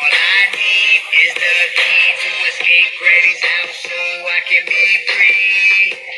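A song: a high-pitched, pitch-shifted singing voice over a backing track, carrying on without a pause.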